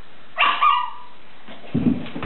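A child's short, high-pitched squeal about half a second in, lasting about half a second. Near the end come a couple of dull thumps on the wooden floor.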